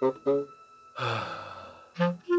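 A man's voice sighs once, a long breathy exhale of about a second that fades out, coming about a second in after a few spoken syllables.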